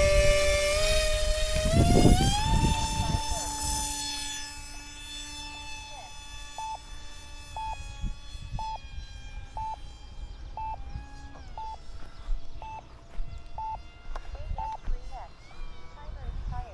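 Electric motor and three-blade propeller of an E-flite AeroScout RC trainer plane whining as the throttle is opened for takeoff. The pitch rises over the first couple of seconds, then holds steady at cruise power while the sound fades as the plane climbs away.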